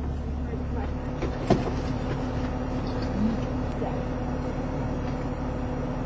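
Car engine idling steadily, a low even hum heard from inside the stopped car with a window open. There is one sharp click about a second and a half in.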